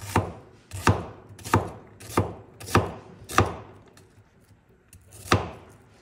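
Kitchen knife slicing an onion on a wooden cutting board: six evenly spaced chops about two-thirds of a second apart, a pause, then one more chop about five seconds in.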